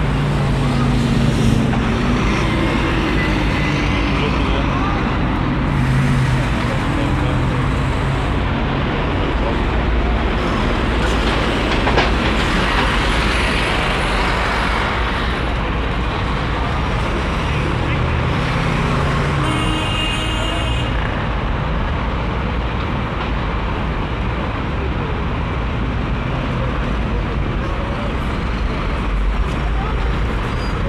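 City street traffic: vehicle engines running and passing at a junction, a steady hum of traffic with voices of passers-by mixed in.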